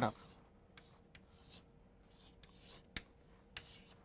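Chalk drawing on a chalkboard: a series of faint, short scratchy strokes, with one sharp tap about three seconds in.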